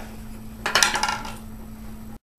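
A metal screwdriver and wooden grips set down on a wooden workbench: a brief clatter of clinks and knocks lasting about half a second, starting a little over half a second in.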